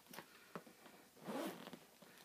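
Zipper on a black patent leather DKNY tote being slid: a couple of small clicks, then a longer zip a little past the middle. The zipper track has been rubbed with wax paper so it glides.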